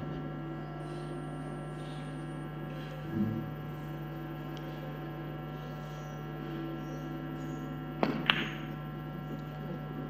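Steady electrical hum, then about eight seconds in two sharp clicks a fraction of a second apart: a three-cushion billiards shot, the cue striking the cue ball and the balls clicking together.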